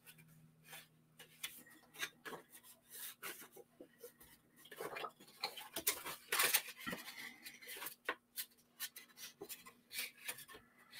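Patterned paper being handled, folded and rubbed with the fingers: faint, scattered paper rustles and scrapes, busiest a little past the middle.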